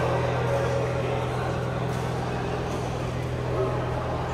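Indoor badminton hall ambience: a steady low hum under distant chatter, with a few faint shuttlecock hits.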